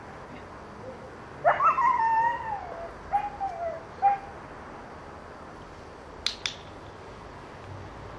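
A dog whining at a high pitch that falls away over about a second and a half, followed by two shorter whines. About six seconds in, a training clicker snaps twice in quick succession, the press and release of one click that marks the behaviour for the dog.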